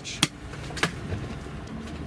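Two sharp taps or clicks about two-thirds of a second apart, the first the louder, from hands handling an object, over a low steady background hum.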